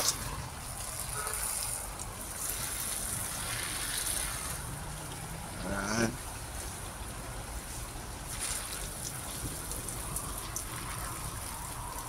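Steady outdoor background noise, a low even hiss with faint distant sounds, and one brief rising tone about six seconds in.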